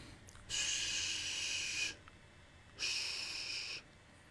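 A person's two long breaths close to the microphone, the first about a second and a half long, the second about a second, with a short gap between.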